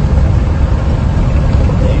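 Steady low rumble of a truck's diesel engine and road noise heard from inside the cab.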